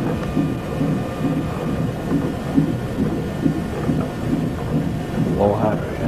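Fetal heart monitor's Doppler ultrasound playing the unborn baby's heartbeat as steady rhythmic pulses, a little over two a second, matching the fetal heart rate of about 138 beats a minute shown on the monitor.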